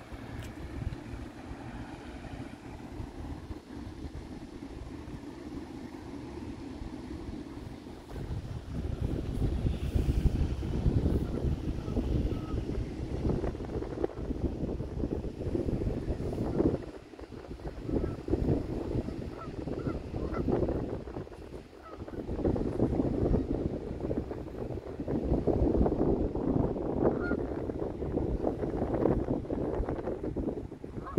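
Wind buffeting the microphone, a low rumble that comes in gusts and grows stronger about eight seconds in, with brief lulls midway.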